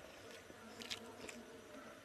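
Faint eating sounds as a mouthful of biryani is taken and chewed by hand, with a few soft crisp mouth clicks about a second in, over a steady faint hum.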